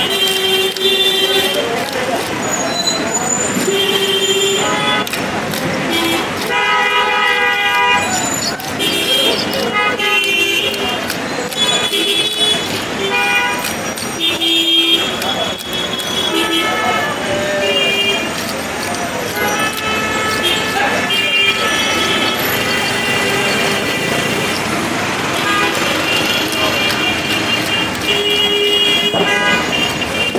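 Busy outdoor market din, with frequent short, steady-pitched vehicle horn toots scattered throughout over a constant background of voices and traffic.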